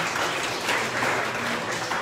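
A roomful of people applauding steadily.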